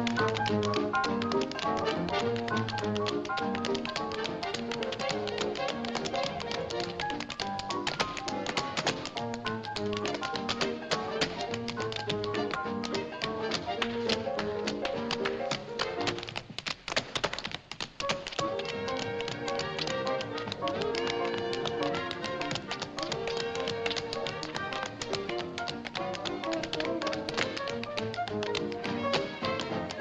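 Two tap dancers' metal-tipped shoes tapping out quick, dense rhythms together over jazzy dance-band music. For about two seconds past the middle the band drops away and the taps carry on nearly alone.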